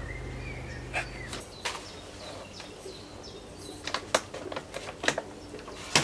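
Gloved hands working potting soil and strawberry root balls into plastic pots: scattered rustles and soft clicks, busiest around four to five seconds in. A low steady hum underneath stops about a second and a half in.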